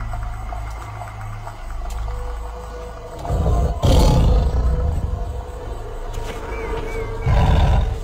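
A tiger roaring over dramatic music: a low rumbling growl first, then a loud roar with a sharp hit about three and a half seconds in, and another loud swell near the end.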